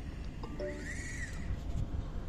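Leica TS16 total station's drive motors whining briefly as the instrument turns itself towards the selected target, the pitch rising and then falling as it speeds up and slows down.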